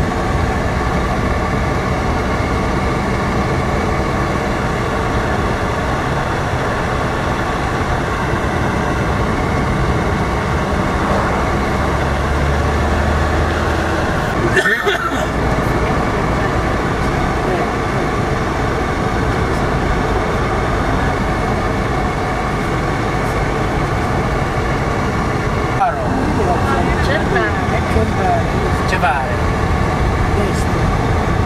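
Car engine and road noise heard inside the cabin of a moving car, steady throughout, with a brief break about halfway through.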